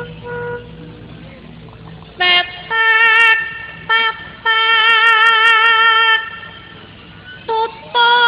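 A female voice singing long held high notes with a wavering vibrato, in phrases broken by short pauses: a pesinden's vocal line in Javanese wayang kulit gamelan music.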